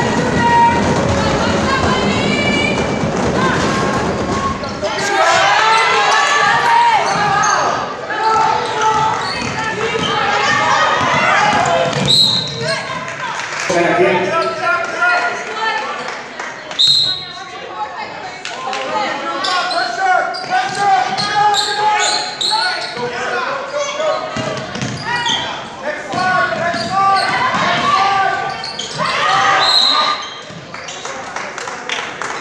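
A basketball bouncing on a hardwood gym floor amid the voices of players and spectators echoing in the gym, with a few brief high squeaks.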